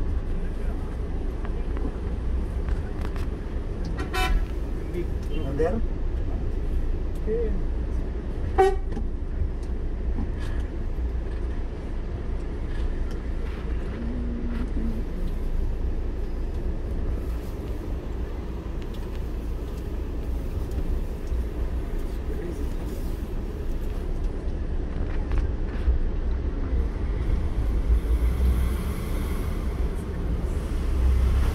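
Town street traffic: car and coach engines running and moving slowly past, with a car horn sounding.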